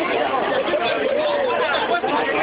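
A crowd of many people talking at once, voices overlapping in a steady chatter.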